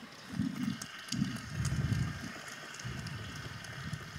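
Low muffled bumps and rustling picked up by the lectern microphone, four short swells, over faint scattered clapping from the audience in a large hall.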